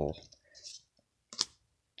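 Pokémon trading cards being slid through the hands, with faint scratching and a pair of sharp clicks about one and a half seconds in as a card is flicked onto the stack.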